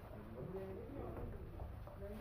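Indistinct voices talking in the background, too faint to make out words, over a low steady hum.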